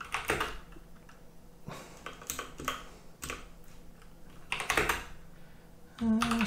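Typing on a computer keyboard: scattered keystrokes in short, irregular runs, with a denser run of keys about three-quarters of the way through.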